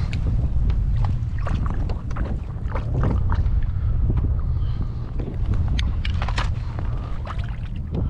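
Wind rumbling on the microphone, with scattered small clicks and knocks from the kayak and gear.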